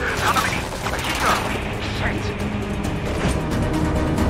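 Metallic rattling and clanking from a moving car-carrier truck's deck, with a few short squealing screeches, over a steady low road rumble and a music score.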